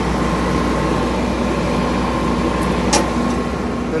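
Generator engine running steadily, a constant low drone with a faint steady whine above it. A single sharp click about three seconds in.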